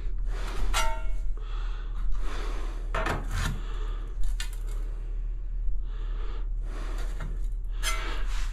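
Hand tiling work: light taps, clinks and scrapes as ceramic wall tiles are nudged into line and a wedge is pushed in, with one short ringing clink just under a second in.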